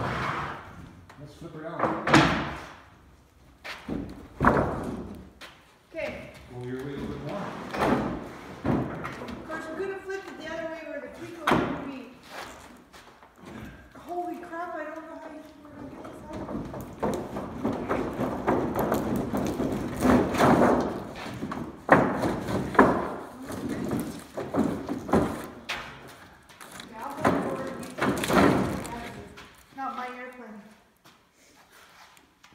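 Wooden boards and clamps knocked and set down on a wooden workbench while an aluminum sheet is bent, giving a string of separate thumps and bangs, the loudest about two seconds in and again about twenty-two seconds in. Low voices talk indistinctly between the knocks.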